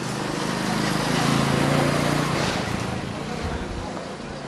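A motor vehicle's engine passing close by over general street noise, growing louder to a peak in the middle and then fading away.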